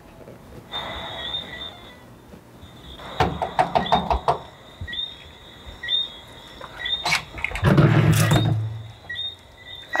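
A quick run of knocks on the front door about three seconds in, another knock a few seconds later, then a longer noisy rattle as the door is unlocked and opened. Small high chirps repeat faintly in the background.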